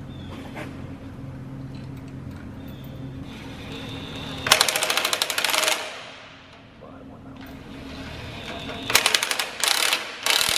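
Cordless DeWalt impact wrench hammering a bolt on a strip tiller row unit in two bursts of rapid rattling, each lasting about a second, one near the middle and one near the end, over a steady low hum.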